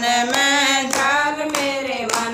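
Women singing a devotional bhajan together, with hand claps keeping a steady beat.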